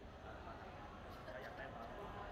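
Faint, indistinct talking from a basketball team huddle.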